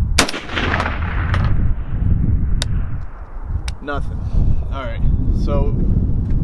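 A single shot from a SCAR-pattern 7.62×51 mm (.308) rifle firing a 175-grain match hand load, fired a fraction of a second in. Its report rings out and fades over about a second and a half.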